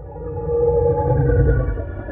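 Electronic drone sting: a deep rumble under a held cluster of steady synthesized tones, swelling up over the first half second.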